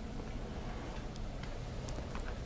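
Quiet lecture-room tone: a steady low hum with a few faint, sharp clicks in the second half.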